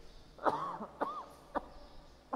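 A man clearing his throat with three short coughs about half a second apart.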